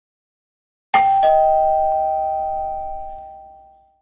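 Two-tone doorbell chime ringing once: a ding-dong, the higher note about a second in and the lower note just after it, both ringing on and fading away over the next few seconds.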